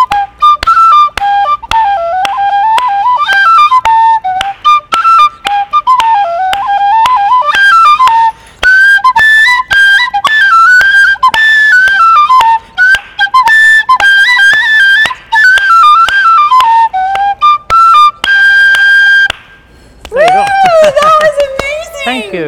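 Brass penny whistle (tin whistle) in D playing a brisk tune in 4/4 in quick runs of notes over a steady percussive beat. It ends on a long held high note about nineteen seconds in, and voices follow.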